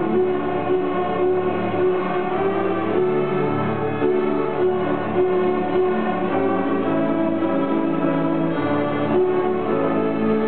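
A children's string orchestra of violins and cellos playing a simple tune in steady, held bowed notes that change about once a second.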